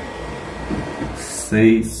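The cooling fan of a 12-volt JINSI 3000W inverter runs steadily, a hiss with a faint high whine. It has been switched on by the load of a washing machine the inverter is powering. A man says a short word near the end.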